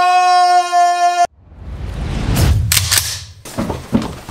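A man's loud, long scream held at one steady pitch, cut off abruptly about a second in. A low rumbling swell follows, then a few sharp clicks or knocks near the end.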